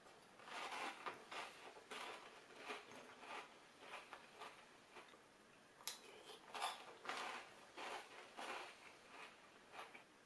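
Close-up chewing of large Reese's Big Puffs peanut-butter cereal balls in milk, crunching in irregular bites about one or two a second, with a single sharp click about six seconds in.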